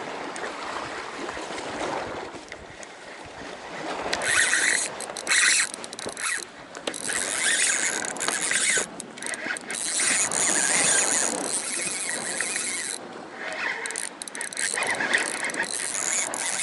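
Spinning reel working under load with a fish hooked on a hard-bent rod. The reel's gears and drag whir and click in loud stop-start runs from about four seconds in, after a quieter opening.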